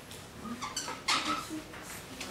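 Dry-erase marker squeaking and scratching across a whiteboard as a word is written: a run of short high squeaks, with a louder scratchy stroke about halfway through.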